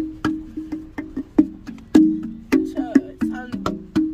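Wooden slit tongue drum struck by hand: an uneven run of short, ringing wooden notes at a few different pitches, about three or four strikes a second.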